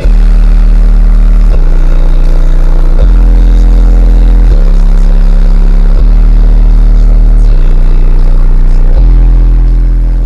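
Car-audio subwoofer system in a Chevrolet Blazer playing deep bass tones at extreme volume, two low notes alternating about every second and a half. The pressure is strong enough to push a towel out through the cracked window.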